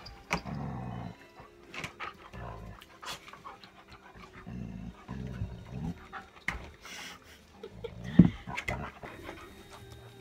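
Dogs playing rough with a cat, panting, with several low growl-like sounds of about a second each. Scattered clicks and knocks run through it, with one louder thump about eight seconds in.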